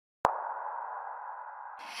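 Electronic sound effect opening a dance remix: a sharp hit about a quarter second in, trailing into a fading band of filtered noise that opens into a brighter hiss just before the music starts.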